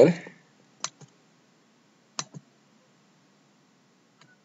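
Two computer mouse clicks, about a second and a half apart, each a quick press followed by a fainter release tick.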